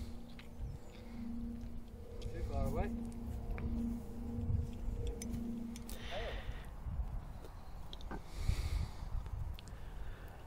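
Faint outdoor ambience: wind rumble on the microphone, a low hum that comes and goes through the first half, and a few short chirps.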